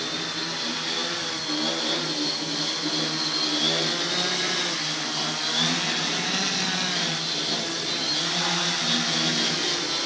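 Hobbyking X4 quadcopter's motors and propellers buzzing steadily while it hovers low, the pitch wavering up and down.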